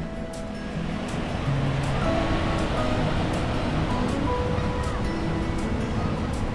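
Background music with held notes over the wash of small waves breaking on a sandy shore; the surf grows louder about a second and a half in.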